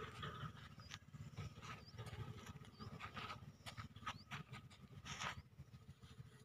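Faint outdoor background: a steady low rumble, short high chirps about once a second, and a few brief soft scuffs, the clearest about three and five seconds in.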